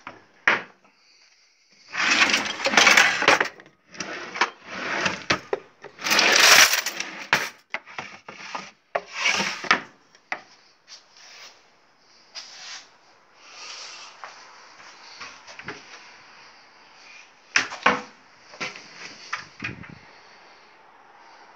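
Kitchen drawers and cupboard doors being opened and shut by hand, with the contents clattering: a dense run of loud clatters and knocks in the first half, then quieter knocks and one sharp knock near the end.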